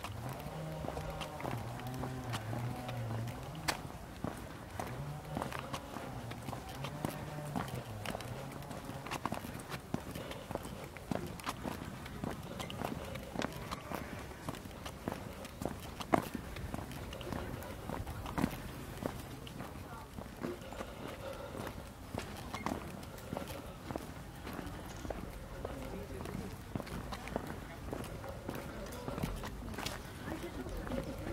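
Footsteps on a brick-paved path, a steady run of sharp taps, with people's voices talking in the background during the first several seconds.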